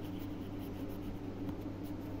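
Pencil writing on notebook paper: soft, continuous scratching as a word is written out by hand, with a steady low hum underneath.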